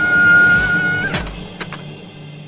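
A child's long, high-pitched scream held on one note, ending with a short upward flick about a second in. It is cut off by a thud, and two lighter knocks follow, like a small toy car tumbling and landing. Background music runs underneath.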